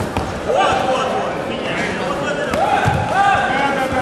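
Taekwondo sparring in a hall: long drawn-out shouts from voices twice, over a background of hall chatter, with a few sharp thuds of kicks and feet striking body protectors and the mat.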